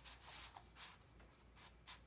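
Faint rustle and slide of cardstock album pages being handled, a few soft swishes, the clearest near the start and just before the end.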